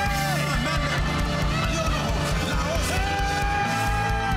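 Live worship band playing with a steady beat on drums and bass under keyboards, while a male singer holds long notes into a microphone. One held note slides down and ends just after the start, and another begins about three seconds in.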